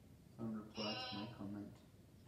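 A person's voice making a short run of wordless, pitched syllables, about a second long, starting about half a second in.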